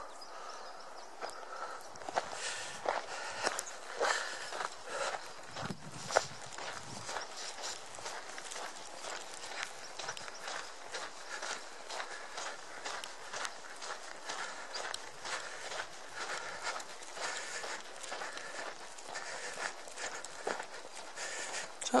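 A hiker's footsteps on a dirt and pine-needle forest trail at a steady walking pace.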